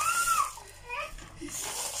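A child's voice: one short, high call that rises and falls in pitch right at the start, then quiet.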